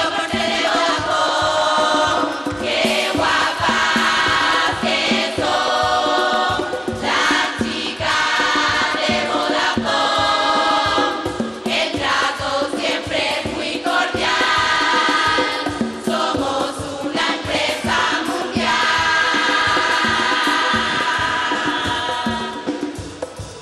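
Women's carnival murga chorus singing a song together, with a steady percussion beat underneath.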